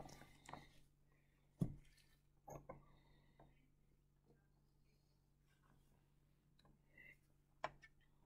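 Near silence with a faint steady low hum, broken by a few faint light knocks and taps of labware being handled on the bench: one about a second and a half in, a couple around two and a half seconds, and one near the end.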